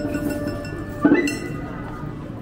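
Kagura hayashi festival music: a long held note, then about a second in a single sharp metallic strike, a small gong or bell, that rings on in a high tone.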